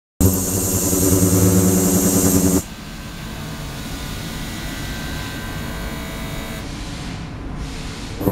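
Ultrasonic cleaning tank with immersible stainless-steel transducer boxes running: a loud, steady buzz with a hum beneath it and a hiss above. About two and a half seconds in it drops suddenly to a much quieter hiss with faint thin tones.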